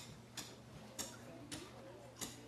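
Faint, sharp ticks about twice a second over a low steady hum.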